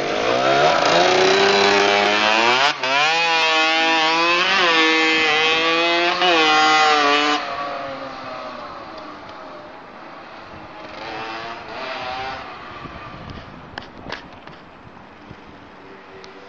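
Small two-stroke dirt bike pulling away hard and revving up through the gears, the pitch climbing and falling back at each shift. About seven seconds in its sound drops suddenly and then fades as it rides off into the distance, with a faint rev a few seconds later.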